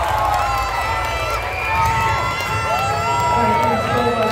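Crowd of spectators shouting and cheering, many high voices rising and falling over one another.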